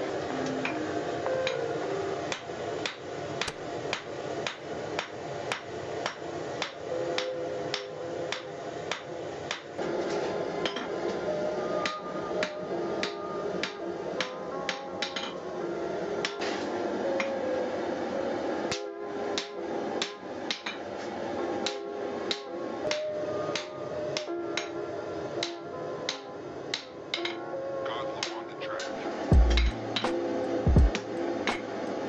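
Hand hammer striking red-hot steel on an anvil as a knife blade is forged from an old chisel: a steady run of blows, about two to three a second, with a heavier thud near the end.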